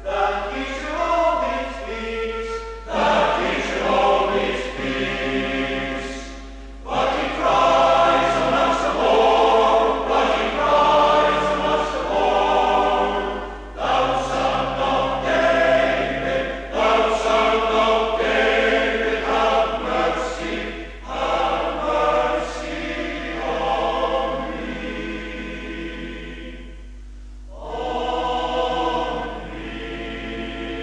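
Cornish fishermen's male voice choir singing in harmony, in sung phrases separated by short breaks, from a 1970s cassette recording.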